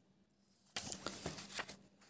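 Paper rustling as a page of a softcover book is handled and turned, starting about a second in and lasting about a second.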